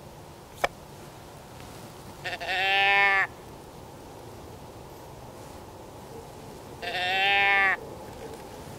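A hand-held deer bleat can call, tipped over twice to give two drawn-out bleats imitating a deer, each about a second long, the first a few seconds in and the second near the end. A single sharp click comes just before the first bleat.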